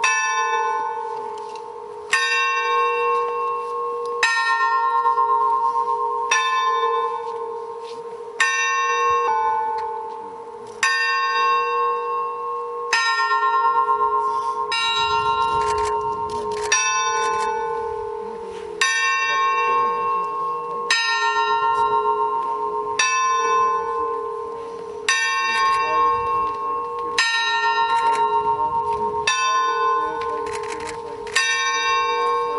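A single church bell tolling slowly, about one stroke every two seconds, each stroke ringing on into the next: a funeral toll.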